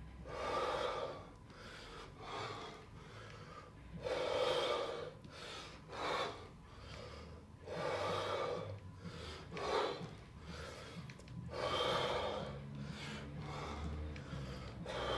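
A man breathing hard in heavy, rhythmic breaths through a kettlebell squat-and-press set, a breath every second or two in time with the reps.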